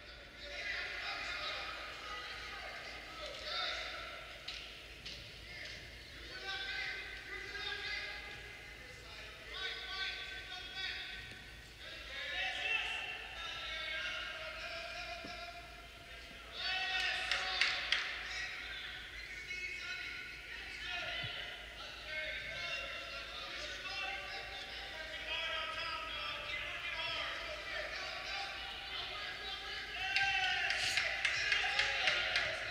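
Indistinct voices calling out in a large hall, overlapping and echoing, with a louder stretch about halfway through.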